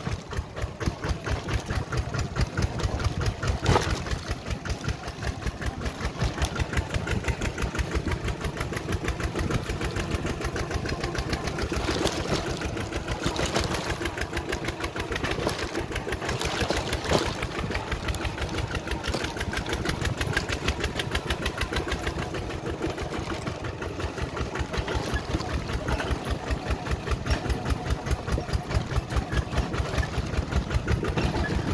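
Single-cylinder diesel engine of a two-wheel walking tractor chugging steadily under load with a rapid, even beat, with a few sharp knocks scattered through.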